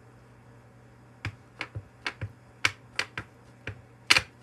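A clear acrylic stamp block tapped repeatedly on a black ink pad to ink the stamp: a run of about ten short, sharp clicks that starts about a second in, over a low steady hum.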